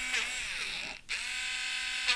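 An electric eraser's small motor whirring against the drawing paper, lifting graphite to put a highlight in the eye. About halfway through it cuts out briefly, then spins back up with a rising whine.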